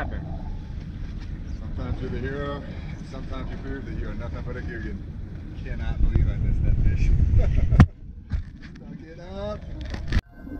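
Wind rumbling on the microphone over open water, with short snatches of voice and a single sharp knock near the eight-second mark.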